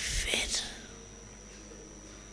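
A short breathy, whisper-like sound from the speaker into a close microphone, lasting about half a second at the start, followed by quiet room tone with a faint steady high whine.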